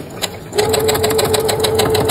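Sewing machine stitching a seam through denim: a few slow stitches, then about half a second in it speeds up to a steady run of rapid needle strokes over the motor's hum.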